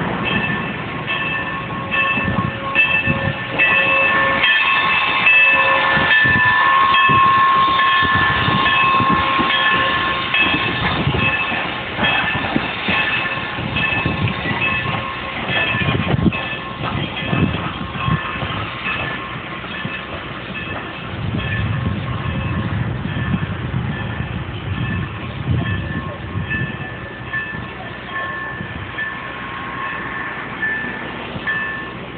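A steam-hauled train of passenger coaches, pushed in reverse by locomotive #475, rolling slowly past: a rumble with wheels clicking over rail joints, under a steady high-pitched squeal. It is loudest in the first ten seconds as the cars pass close by.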